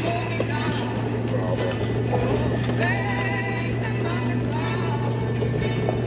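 Steady low engine drone of a 2002 Jeep Grand Cherokee Overland's 4.7-litre V8, heard from inside the cabin while driving in high range, with music playing over it.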